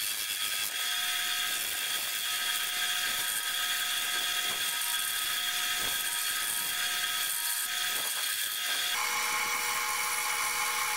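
Lathe running with a steady whine while a gouge cuts a spinning cast cholla-skeleton blank, shaving off curls. About nine seconds in, the whine abruptly changes to a different steady pitch.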